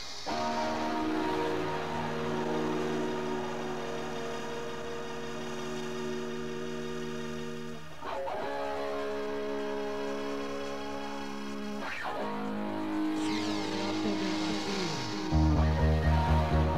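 Club dance music from a 1990s DJ set tape, in a breakdown: held synth chords that change every few seconds with no beat under them. Near the end a loud, low pulsing beat comes back in.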